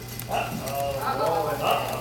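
A man's voice giving a drawn-out, wavering, maniacal cackle into a stage microphone, over a steady low amplifier hum.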